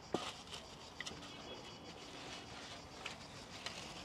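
Quiet outdoor background with a few faint, short clicks scattered through it.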